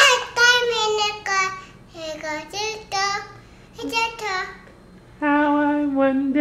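A young boy singing in a high voice, in short phrases with brief pauses between them.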